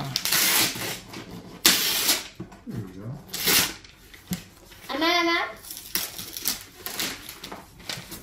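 Wrapping paper being ripped off a gift box in several quick tears, with crackling paper between them. A child's voice calls out briefly about five seconds in.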